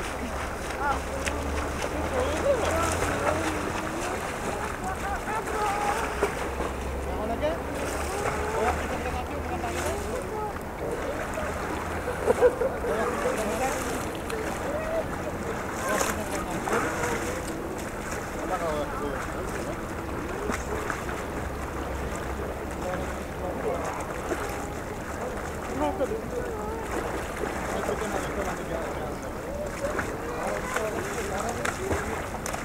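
Background chatter of people's voices on and around a swimming pond, with a short burst of laughter about twelve seconds in, and wind buffeting the microphone at times.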